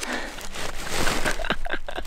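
A plastic chip bag being handled and crinkled, a run of rustles and sharp crackles, busiest in the second half.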